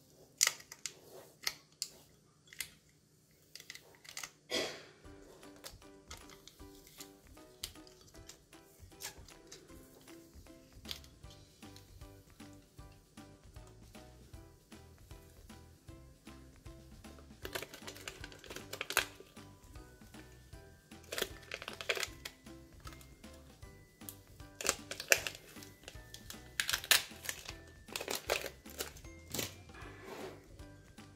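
Soft background music throughout, over the crinkling and peeling of plastic transfer tape being pulled off a vinyl stencil on a glass mug, in short spells that come thicker in the second half.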